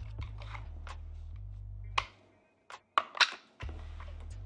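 Clear acrylic card shoe being handled on the blackjack table: a few sharp plastic clicks and knocks, the loudest about two and three seconds in. Under them runs a low steady hum that drops out for a moment in the second half.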